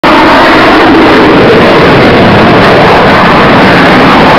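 Fighter jet engine noise, a loud, steady, unbroken rushing roar with no distinct impacts.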